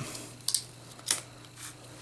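Clear plastic box of an iPod touch being opened by hand: a few light plastic clicks about half a second apart as the lid comes off.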